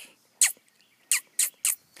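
Four short, high squeaky kissing sounds made with the lips to call puppies, each a quick downward squeak.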